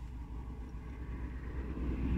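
Road traffic on a busy dual road, heard muffled from inside a parked car: a low steady rumble that grows louder near the end as a vehicle approaches.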